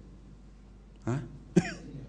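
A person coughing twice, about a second in and again half a second later; the second cough is the louder.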